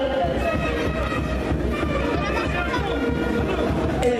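Spectators' chatter from a crowded arena, mixed with music playing.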